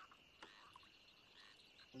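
Near silence with faint frogs croaking in the background, and one faint tick about half a second in.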